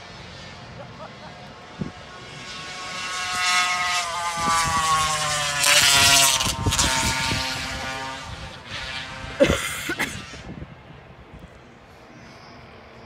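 A race car's engine passing on the hill-climb course: it grows louder for a few seconds, its pitch drops as it goes by, then fades away. A single sharp bang near the end of the pass is the loudest sound.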